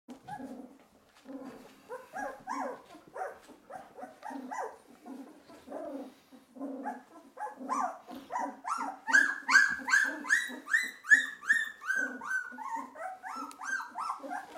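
A two-week-old golden retriever puppy whining: a steady run of short squeals, two to three a second, each falling in pitch, getting louder and higher from about the middle.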